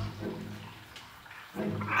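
A short quiet pause, then a man's low, drawn-out hesitant "ah" begins near the end.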